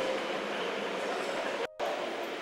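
Steady indoor hall ambience, an even rushing hiss with faint distant voices, that cuts out for a moment near the end.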